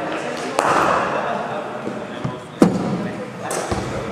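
A cricket ball striking a bat in an indoor net during sweep-shot practice: a sharp knock about half a second in, then a louder crack about two and a half seconds in, echoing in the hall.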